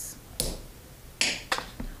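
A popsicle-stick and rubber-band catapult snaps as it is released, a single sharp click about half a second in. A brief soft rustle and two lighter taps follow later.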